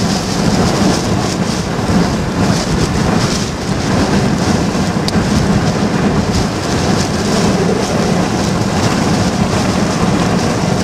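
Hurricane wind and heavy rain beating on a car, heard from inside the cabin: a loud, steady roar with the hiss of rain pulsing as gusts come through.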